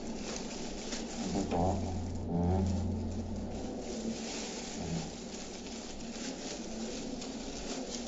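Plastic laser toner cartridge parts being handled by gloved hands: scattered light clicks and rustles over a steady low buzz.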